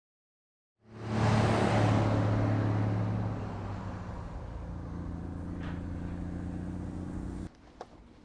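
Street traffic: a motor vehicle comes in loud about a second in and fades over the next two seconds, leaving a steady low engine hum. The hum cuts off abruptly near the end.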